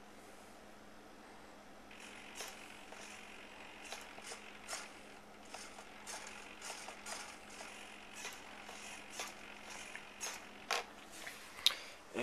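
Small RC servos in a Yak 54 model airplane whirring faintly in many short, quick bursts as the transmitter sticks are moved, driving the control surfaces, with a few light clicks. A faint steady hum runs underneath.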